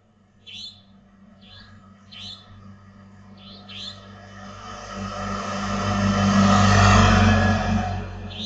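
Short, high chirping calls of an unidentified bird, several in the first four seconds. Then a motorcycle passes close by, its engine and tyre noise rising to the loudest point about seven seconds in and fading near the end.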